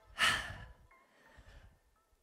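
A woman's strong exhale through the mouth, close on a headset microphone: one breath of about half a second just after the start, let out with a downward arm swing, then quiet breathing.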